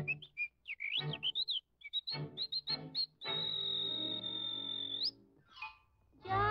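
Whistled cartoon bird chirps with light orchestral accompaniment, short rising and falling tweets. About three seconds in comes one long, steady high whistle over a held orchestral chord, ending with an upward flick.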